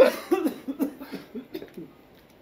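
A man's voice in a few short, fading vocal sounds, such as brief coughs, trailing off to quiet about a second and a half in.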